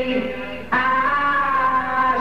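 Rock band playing live, electric guitar chords ringing, with a new chord struck sharply about three-quarters of a second in.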